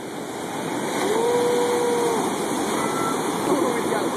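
Ocean surf breaking and washing up the beach in a steady rush. Over it come people's voices, one holding a long call for about a second, starting about a second in.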